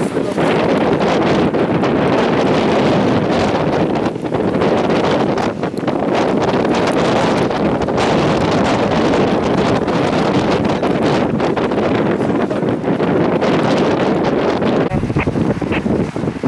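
Wind blowing across the microphone: a loud, steady rushing noise with a brief dip partway through.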